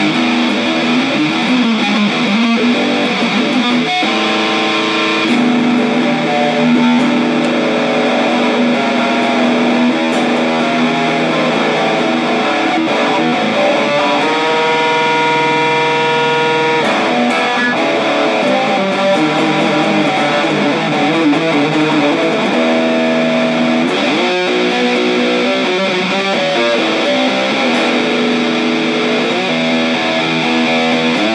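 Ibanez AS73 semi-hollow electric guitar played through a distortion pedal, picked in continuous rock riffs. A chord is held ringing for a couple of seconds about halfway through, and there is a slide up the neck near the end.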